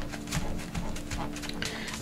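Paper towel pressed and rubbed over freshly glued paper layers: a few faint, soft rustles and taps over a low steady hum.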